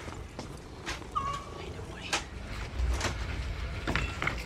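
Small-shop room ambience: a low background hum with faint voices and a few scattered clicks and knocks, and a brief high tone about a second in.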